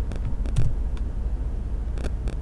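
Computer keyboard keys clicking a few times, twice in the first second, as a terminal command is typed and entered, over a steady low hum.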